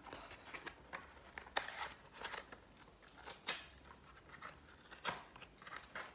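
A small cardboard product box being opened by hand: scattered light clicks and short scrapes of the card, with a few sharper ones about a second and a half, three and a half and five seconds in.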